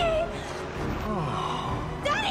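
A woman gasping and whimpering in panic, with a falling whimper about a second in.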